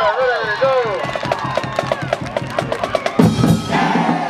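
Marching band percussion in the stands: after some shouting voices, the drumline taps out a fast, even beat of sharp clicks, about seven a second. About three seconds in, the low brass and drums come in loudly.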